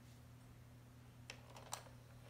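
Near silence with a steady low hum and two faint clicks, about 1.3 and 1.75 seconds in.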